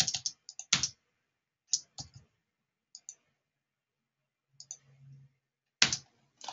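Scattered clicks of a computer mouse and keyboard, about ten in all, coming at irregular intervals with some in quick pairs.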